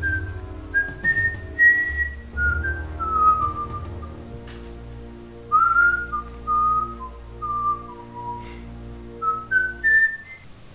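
Background film score: a slow whistled melody of single held notes that step up and down, over sustained low chords.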